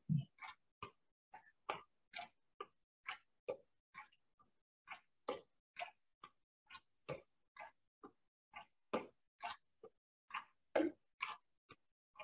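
Light, quick foot taps and steps of trainers on a gym floor during low-impact half jacks, a soft tap about twice a second.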